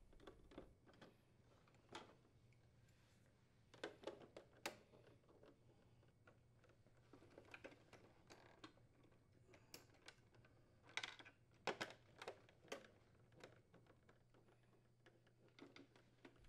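Near silence with faint, scattered clicks and ticks, a few louder ones, of a nut driver unthreading small screws from a refrigerator's plastic ice door assembly and hands handling its parts, over a faint steady low hum.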